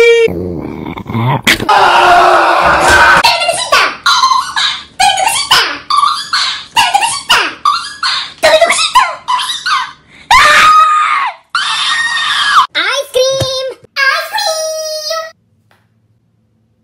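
Loud, rapid vocalising and screaming in short shouted syllables, with some very high-pitched squeals near the end. It cuts off abruptly just before the end.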